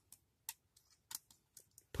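Faint, scattered small clicks of a snap-fit plastic model kit's parts and joints as they are handled and moved, about half a dozen ticks spread over two seconds.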